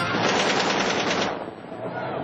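Rapid machine-gun fire, one continuous burst lasting just over a second that then stops.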